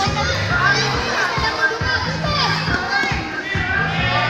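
Girls' voices shouting and calling out during a futsal match, over background music with a repeating bass line.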